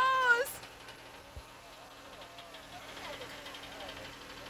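A John Deere compact tractor's diesel engine running steadily as the tractor drives away across grass, heard as a faint, even low hum.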